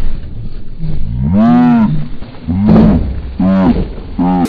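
Men's voices crying out in long, low, drawn-out wails, four of them, each rising and falling in pitch. Under them is a low rushing rumble from liquid nitrogen flashing to vapour in hot water and billowing into a cloud.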